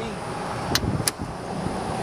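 Two sharp clicks about a third of a second apart, from the CX-5's rear seatback release mechanism being worked from the cargo area, over steady outdoor background noise.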